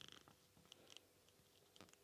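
Near silence, with a few faint ticks as a small Phillips screwdriver turns a tiny screw out of an earbud's housing.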